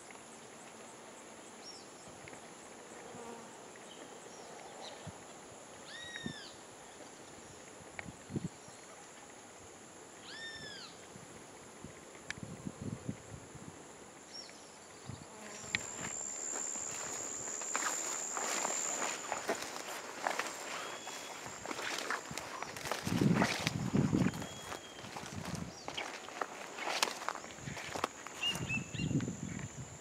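Steady high-pitched drone of insects with a bird giving two short arched calls early on. From about halfway, footsteps and rustling through brush grow louder, loudest a few seconds later, with a few more short bird calls over them.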